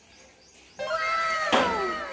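A drawn-out, cat-like meowing call that starts about a second in, peaks sharply near the middle and then trails off in several falling tones.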